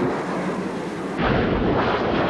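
Tomahawk cruise missile launching from a warship: the rocket booster's loud rushing roar right after the countdown, turning into a deeper, heavier rumble about a second in.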